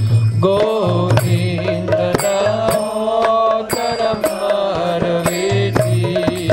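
A man singing a Sanskrit devotional prayer as a melodic chant into a microphone, in long held notes over a steady low drone, with light percussive strikes about twice a second.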